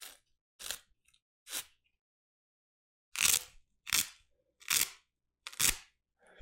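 A fingerless lifting glove and its wrist strap are rubbed and pulled right at the microphone, making short, scratchy rasps. Three soft ones come in the first two seconds. Four louder ones follow from about three seconds in, spaced just under a second apart.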